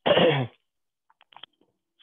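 A person's voice: one short vocal sound, half a second long at the start, with its pitch falling, then quiet broken by a few faint clicks.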